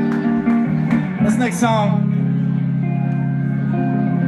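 Live band playing long, held chords on amplified guitars, with a brief voice about a second and a half in.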